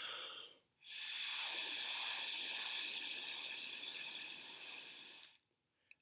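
A short breath, then one long steady blow of air through a bendy drinking straw: a hiss that slowly fades over about four and a half seconds and then stops. The air stream holds a ping-pong ball levitating just above the straw's upturned tip.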